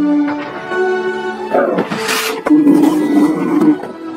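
Film score with held tones. About one and a half seconds in, a dragon's roar, a creature sound effect, breaks over it and runs for about two seconds.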